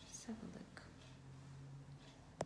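A brief, faint murmur from a person's voice, with a little breathy hiss, about a quarter second in. After it comes near quiet with a low, steady hum underneath.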